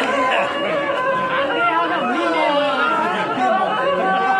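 Several people talking over one another in a lively chatter during a pause in the singing.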